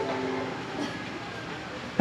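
Soft background music, a held note fading out in the first half second, then a steady hiss of room noise.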